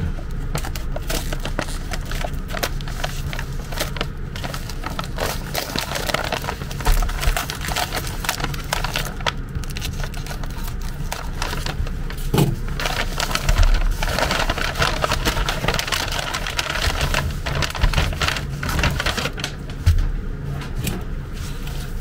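Paper wrapping and plastic film crinkling and rustling as a package is opened with a utility knife: dense, irregular crackles with a few louder knocks.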